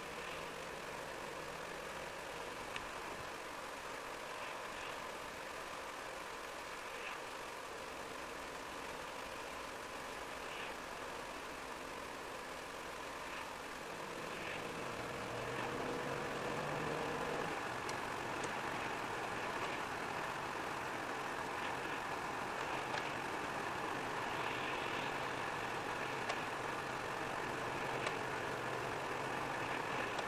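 Steady car noise heard inside the cabin while driving on a wet road: engine and tyre hiss. It gets louder about halfway through as the car speeds up.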